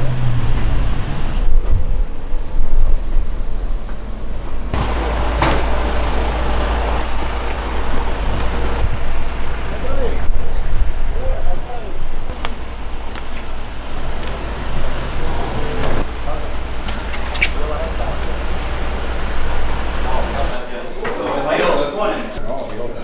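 Indistinct voices and chatter over a low, steady rumble. The rumble starts about five seconds in and cuts off abruptly near the end.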